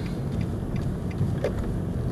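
Car running along a city street, heard from inside the cabin: a steady low rumble of engine and tyre noise.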